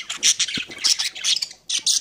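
Budgerigars squawking and chattering: a rapid string of short, scratchy calls, several a second.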